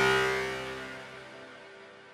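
Native Instruments Massive synth playing the 'Dissonant Guitar' preset: the last note of a short run rings on as a plucked, guitar-like tone and fades away over about two seconds. The patch is in mono voicing, so the notes do not overlap on one another.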